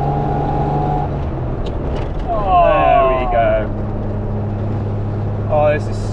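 1952 Alvis TA21's straight-six engine running under way, heard from inside the cabin, with a higher whine that stops about a second in. About two to three seconds in, the engine note drops to a lower, steady pitch.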